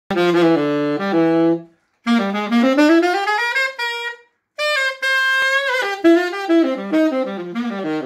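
Chateau Valencay CTS22M tenor saxophone played solo in short phrases with brief breaths between them. A low phrase is followed by a rising run up to a held high note, then a run of quick notes falling back down.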